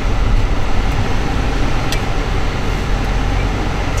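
Steady low rumble of engine and road noise inside the cabin of a moving 2006 Range Rover Sport Supercharged, with its supercharged V8. A light click comes about halfway through.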